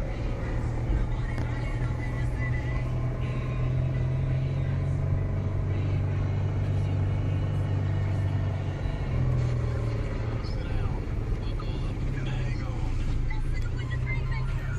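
Car engine and road noise heard from inside the cabin while driving in traffic: a steady low drone that sinks a little in pitch midway and rises again about nine seconds in.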